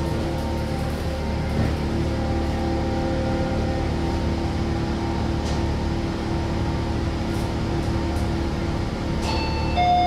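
Passenger lift car travelling up between floors with a steady running hum. Near the end an arrival chime rings as the car reaches the floor.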